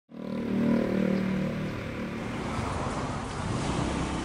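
A motor vehicle's engine running close by, loudest in the first second or two, then fading into a steady street hum.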